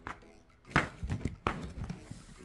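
A cat wriggling on her back against the underside of a sofa and the floor: a few short, soft knocks and scuffs starting about three quarters of a second in, the first the loudest.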